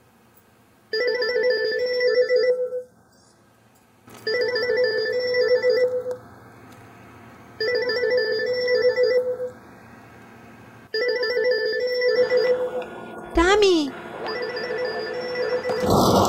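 Mobile phone ringtone, a short repeating melody that sounds four times about three seconds apart, in a handbag being searched. Near the end comes a brief wavering, falling tone and a swell of noise.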